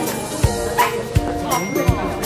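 A small dog barking over background music that has a steady beat.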